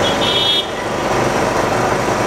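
Street din of road traffic, with a short high-pitched toot lasting about half a second just after the start.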